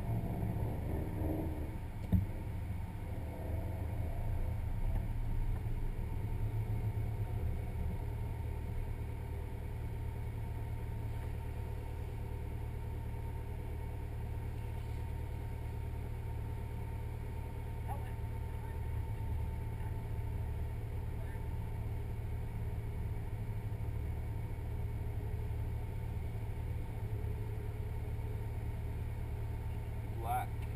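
Naturally aspirated Subaru flat-four engine idling steadily, heard from inside the cabin, with a single sharp knock about two seconds in.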